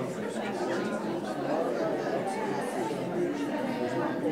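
A church congregation talking in pairs, many overlapping conversations at once filling the room with steady chatter.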